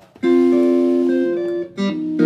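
Jazz combo starting a tune: a chord rings out about a quarter of a second in and is held for more than a second, then fresh chords are struck near the end.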